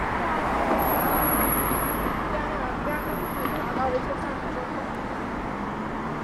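Steady city street traffic noise, with cars passing on the road.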